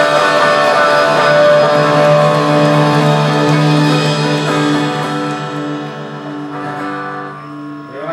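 A live rock band with electric guitars holds a final chord that rings on and then fades away over the last few seconds, ending the song.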